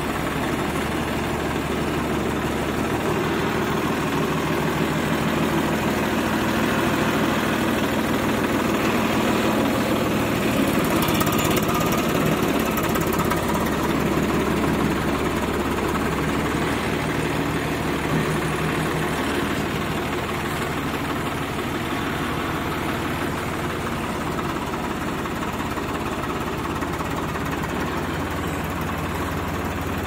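Swaraj 855 tractor's three-cylinder diesel engine running at low revs as the tractor drives slowly, its sound steady and a little louder around the middle.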